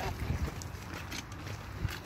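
Irregular footsteps on a dirt path over a low rumble of wind on the microphone.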